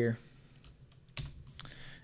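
Computer keyboard keystrokes: one sharp click about a second in, then a couple of fainter clicks.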